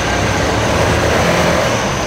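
Steady motor-vehicle engine and road noise with a low hum, holding even throughout.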